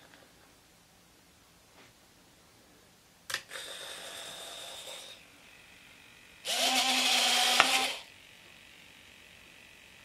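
RC model gear-door servos give a click and a short high electric whine for about two seconds, a little over three seconds in. Then, about six and a half seconds in, the electric retracts drive the wheels up with a louder, lower geared motor whine lasting about a second and a half, ending with a sharp click as the gear stops.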